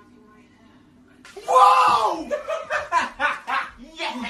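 A man's sudden loud scream of fright about a second in, followed by a string of shorter yells and shouts.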